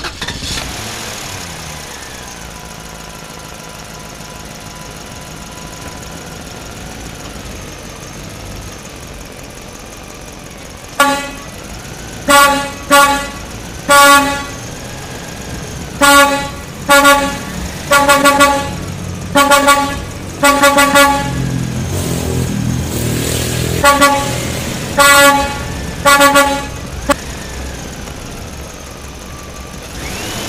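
A truck engine running, its pitch gliding at first, then a long run of short horn toots on one pitch, about fifteen in all in quick groups, starting about a third of the way in and ending a few seconds before the end, with the engine rising in pitch between the groups.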